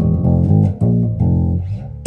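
Richwood (SX) 70s-style Jazz Bass copy played fingerstyle through a Laney RB4 bass amp and 1x15 Laney extension cabinet: a loud riff of about five plucked notes.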